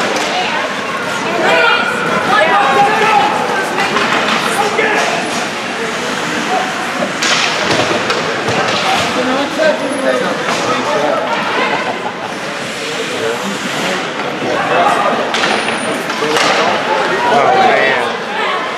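Ice hockey game sounds in a rink: voices of players and spectators talking and calling out throughout, with scattered sharp clacks of sticks and the puck against the boards.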